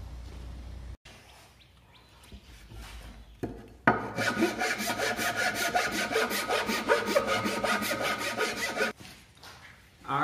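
A wood chisel scraping and rasping out the waste wood from a half-lap notch whose kerf slices were cut with a circular saw. A few faint knocks come first, then a loud, rapid scraping starts about four seconds in and lasts about five seconds.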